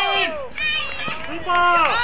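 People laughing heartily in several rising and falling bursts.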